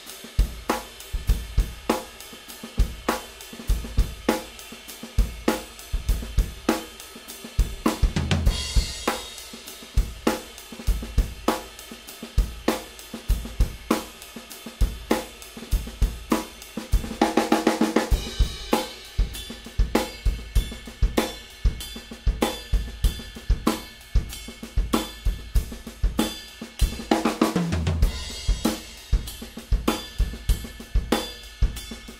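Drum kit played in a heavier groove: bass drum and snare strokes under the steady wash of a Zildjian 22" K Constantinople Bounce Ride cymbal. Fills break the pattern three times, the busiest one about two-thirds of the way through.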